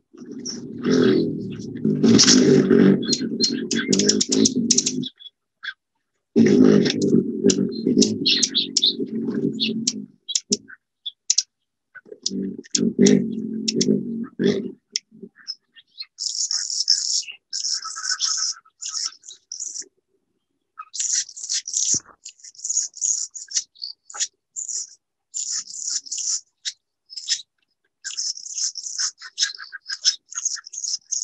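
Field recording of an Anna's hummingbird. The first half holds three stretches of low, rough noise a few seconds each. From about halfway there are short bursts of high, scratchy, buzzy song notes, repeated over and over.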